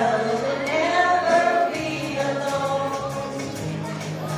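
A group of singers, several on microphones, singing a song together over instrumental accompaniment with sustained low bass notes underneath.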